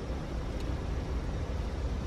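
Steady low rumble with a hiss over it: outdoor background noise around a parked car with its door open, with one faint click about half a second in.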